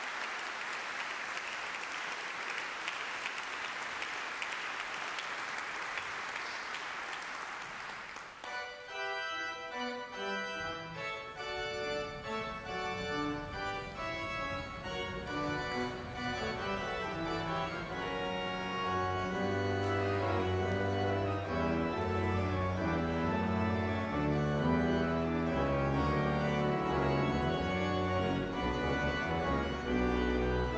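Audience applauding, then a pipe organ starts playing about eight seconds in, sustained chords moving through a piece, with deep pedal bass notes joining a little past halfway.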